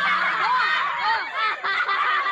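Laughter: a quick run of short notes that rise and fall in pitch.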